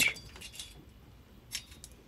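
A few faint, light metallic clicks and clinks, one a little louder about one and a half seconds in, as metal bike parts are handled.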